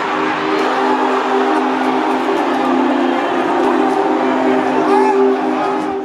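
Stadium crowd noise under a long, steady horn-like chord of several held notes.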